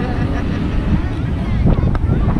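Wind buffeting the microphone in a steady low rumble, over road traffic at an intersection, with voices talking in the background.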